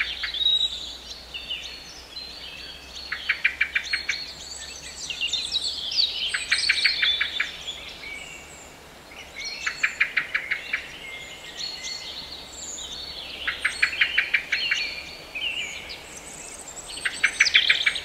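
Birdsong: a short, fast trill of repeated notes comes back about every three to four seconds, with higher chirps between. No music plays under it.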